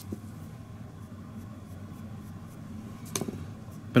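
Quiet workbench handling: faint light scraping of hands on the model and bench, with a single sharp click a little after three seconds in.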